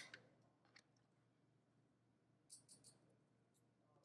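Near silence: room tone with a few faint light clicks, a single tick just under a second in and a quick run of three about two and a half seconds in.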